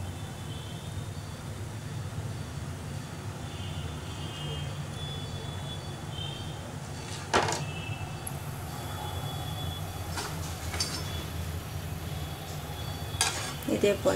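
Hot oil sizzling faintly under a steady low hum while a batch of fried karasev drains on a perforated steel ladle over the pan. Two sharp metal clicks, one about seven seconds in and one near the end.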